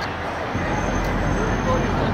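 City street traffic noise: a motor vehicle's low rumble swells about half a second in, with a thin high whine for about a second, under faint chatter from people nearby.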